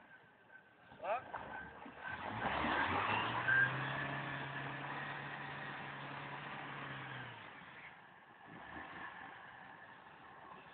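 Jeep Wrangler engine held at steady raised revs for about five seconds as the stuck vehicle is driven against the mud, then easing off.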